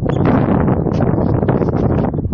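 Wind buffeting the phone's microphone: a loud, steady rumble that starts suddenly.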